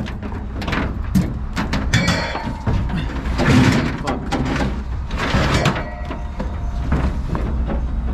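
A car tire being shoved and wedged into a pickup truck bed: irregular knocks and clunks, with three longer scraping rubs as it slides against the bed and the load, over a steady low hum.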